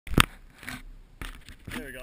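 Handling noise from a camera being picked up and pointed: one loud sharp click right at the start, then a few lighter knocks and scrapes. A voice begins just before the end.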